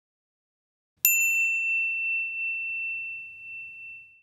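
A single bright bell ding, a notification-bell sound effect, struck about a second in and fading slowly over about three seconds.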